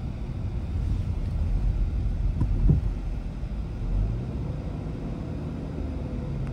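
Low, steady rumble of a car heard from inside the cabin, with one brief thump a little before the middle.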